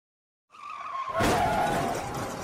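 Car skid-and-crash sound effect: tyres squealing, then a little over a second in a loud crash while the squeal carries on.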